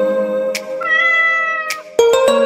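A kitten meows once, a single drawn-out call of about a second that starts about a second in, over soft background music with a held note.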